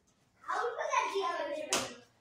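A child's voice calling out excitedly for about a second, followed near the end by a single sharp clap.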